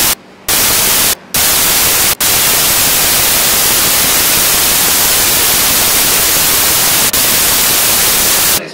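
Loud static hiss covering the whole sound, a fault in the recording that blots out the speech. In the first second and a half it comes in short bursts with brief gaps, then runs unbroken.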